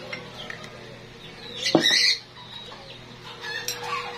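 A bird squawks once, loudly, a little before halfway. Faint clinks of a metal spoon in a glass bowl follow near the end.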